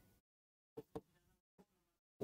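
Near silence, with two faint, brief sounds a little before a second in.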